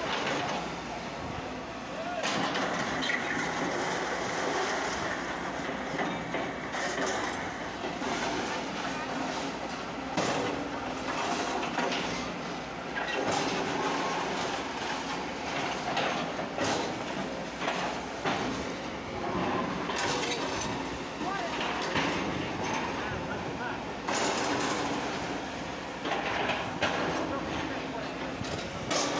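Long-reach Sumitomo demolition excavators tearing into a concrete building: diesel engines running steadily, with repeated crunching and clattering of broken concrete and rebar and falling debris throughout.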